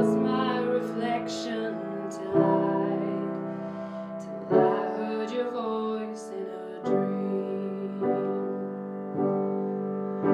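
Grand piano playing a slow instrumental passage: a chord struck about every two and a quarter seconds, five in all, each left to ring and fade before the next.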